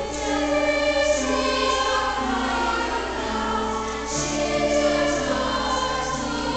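Youth choir singing in parts with piano accompaniment; the voices come in together right at the start.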